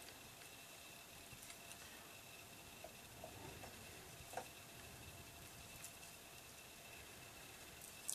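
Near silence: room tone with a faint steady hiss, broken by a few faint soft taps of an alcohol-marker blender pen nib dotting on acetate, the clearest about four and a half seconds in.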